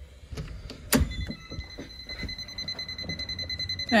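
A sharp click about a second in, then the shop's burglar-alarm unit sounds a steady high-pitched beep that carries on. The alarm system stays out of order after the reset attempt.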